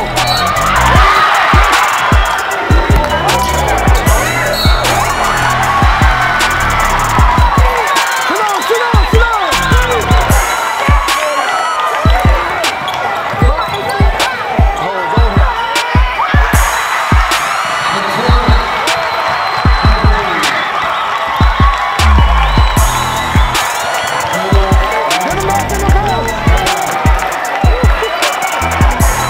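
Basketball game sounds on a hardwood gym court: a ball dribbled in quick repeated bounces and many short high squeaks, under music with a steady beat.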